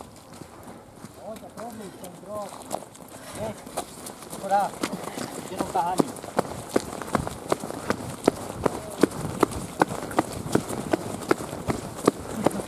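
Running footsteps on a wet paved path, an even beat of about three steps a second that grows louder from about four seconds in. Faint distant voices can be heard in the first few seconds.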